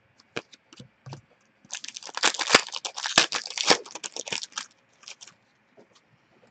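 Foil wrapper of a trading-card pack being torn open and crinkled: a dense run of crackling from about two seconds in until past the middle, with one sharp click in it and a few soft clicks of card handling before and after.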